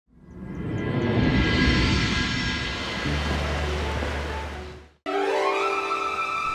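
Animated-series soundtrack music: a dense, swelling cue that fades in, peaks and dies away by about five seconds. After a short break a new cue starts, its tones rising in pitch and then holding a steady chord.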